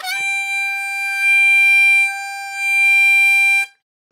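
Blues harmonica holding one steady, bright high note for a little under four seconds, swelling louder twice before stopping suddenly. The tone is rich in upper overtones, shaped by a forward, 'ee'-vowel mouth placement for a brighter sound played without extra force.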